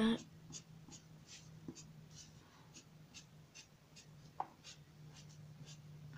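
Pencil-top eraser rubbed over graphite shading on drawing paper in short, faint strokes, about two or three a second, to lighten and blend the shading along the curve of a drawn sphere. A steady low hum runs underneath, and there is one small click a little past the middle.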